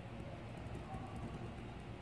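Quiet room tone with a steady low hum, under the faint sound of a ballpoint pen writing on paper.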